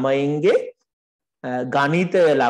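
Speech: a person talking, broken by a sudden gap of total silence lasting about two-thirds of a second, starting just under a second in.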